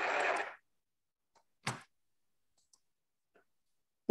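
A single sharp computer mouse click about a second and a half in, with a few much fainter ticks around it, in an otherwise nearly silent room.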